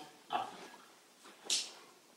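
A man's voice saying a single word, followed about a second and a half in by a short hiss.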